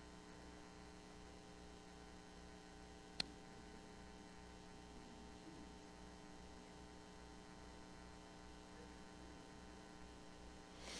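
Near silence with a steady electrical mains hum; a single sharp click about three seconds in.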